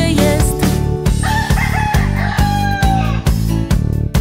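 Children's song backing music with a steady beat, with a rooster crowing over it, one long call of about two seconds starting about a second in.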